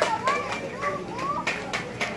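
Children's high voices chattering and calling, with a few scattered claps as applause dies away.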